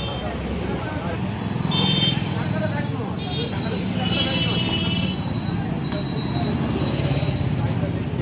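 Street traffic on a busy town market road: motorcycles and rickshaws running past with a steady low rumble. Indistinct voices mix in, and short high-pitched beeps sound several times.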